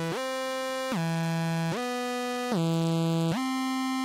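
Trap instrumental beat in a stretch without drums: a synthesizer holds single notes, sliding smoothly to a new pitch about every three-quarters of a second.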